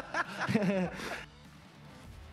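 Men laughing and talking for about a second, then a short lull with faint background music.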